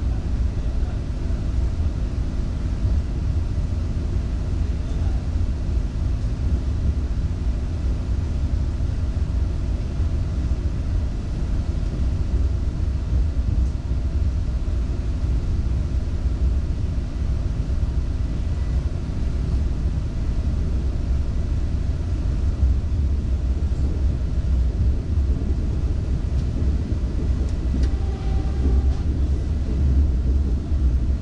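Vande Bharat Express electric train running steadily through a station, heard from inside the coach: a constant deep rumble with a faint steady hum.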